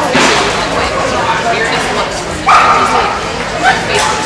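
A border collie barking as it runs an agility jumping course, mixed with a woman's voice calling commands; the loudest call starts suddenly a little past halfway and is held for about half a second.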